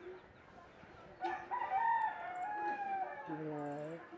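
A rooster crowing once, starting about a second in: one long pitched call that holds steady and then drops lower at the end.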